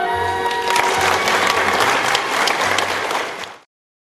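Audience applauding in a hall, rising as the last notes of orchestral music fade in the first second. The applause cuts off abruptly near the end.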